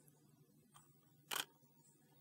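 A single shutter release of a Nikon D800E DSLR, one short sharp click about a second and a half in, against faint background hum.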